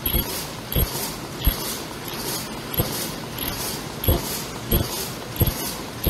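Paper-cup forming machine running, with a steady mechanical hiss and a sharp thump about every two-thirds of a second as its cycle repeats.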